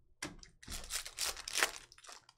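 Glossy chrome trading cards being handled: a light tap about a quarter second in, then a run of quick scraping, rustling strokes as the cards slide over one another.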